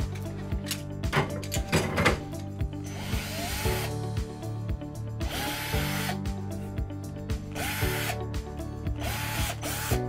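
Cordless drill boring holes into a wall in several short bursts, its motor whining up and slowing down with each one.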